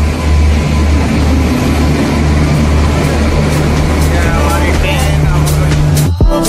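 Indian Railways electric locomotive running in along the platform: a loud steady low hum with noise over it and a run of short clicks in the second half, with voices of people on the platform.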